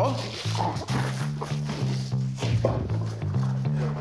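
Playful comedic background music driven by a bass line of short, repeated low notes.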